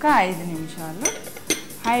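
A metal utensil clinking twice against a dish, about a second in and half a second later, the first clink ringing briefly.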